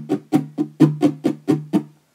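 Guitar strummed with the strings muted, in a quick steady rhythm of about four short strokes a second, each a percussive chop with a brief low chord tone that dies away fast.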